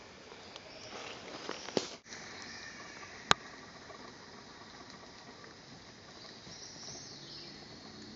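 Quiet bush ambience with faint rustling of footsteps through dry leaf litter, and one sharp click a little over three seconds in.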